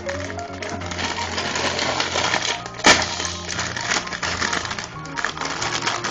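A plastic packet of ladyfinger biscuits crinkling and crackling as it is handled, with one sharp knock about three seconds in, over blues background music.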